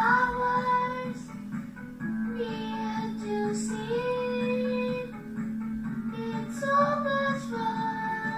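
A song with a high voice singing a melody in long held notes over steady accompaniment.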